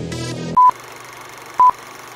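Electronic dance music cuts off, then a film-leader countdown: two short, high beeps one second apart over a steady hiss.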